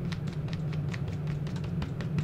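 A steady low hum with a scattering of faint, quick clicks and taps, as of small objects being handled.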